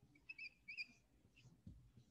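Dry-erase marker squeaking faintly on a whiteboard in two short strokes of writing, about a third of a second and three quarters of a second in. A soft low bump follows near the end.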